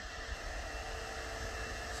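Steady, even hiss with a faint hum: room background noise like a running fan, starting suddenly and holding level throughout.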